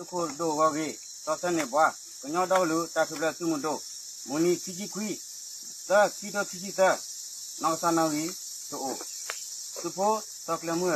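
A steady, high-pitched insect chorus, with a man's voice over it chanting in drawn-out, wavering phrases broken by short pauses.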